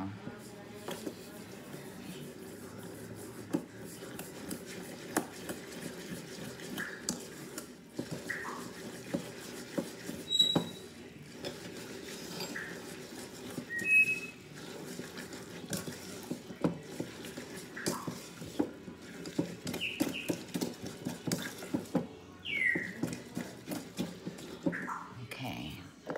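Pecan cookie batter of chopped pecans, sugar, flour, melted butter and egg being stirred by hand in a bowl: irregular clicks and scrapes of the utensil against the bowl, with a few faint short high chirps now and then.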